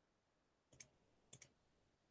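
Near silence, with two faint clicks a little over half a second apart.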